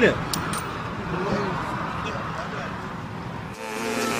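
A man's voice ends a call of 'gooli' (the Russian pigeon call). Steady outdoor background noise follows, with no distinct events. Electronic music cuts in a little before the end.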